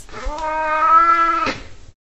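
A cat giving one long, steady meow lasting about a second and a half.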